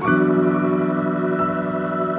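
Background music of held keyboard chords, with a new chord coming in right at the start.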